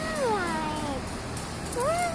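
A cat meowing twice, each call rising and then falling in pitch; the first fades about a second in and the second starts near the end.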